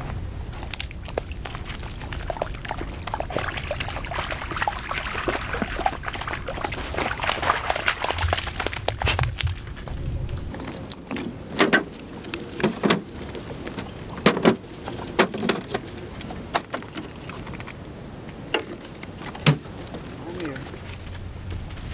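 Pieces of split cedar firewood being handled and stacked, giving a series of sharp wooden knocks in the second half. A low steady rumble runs under the first half.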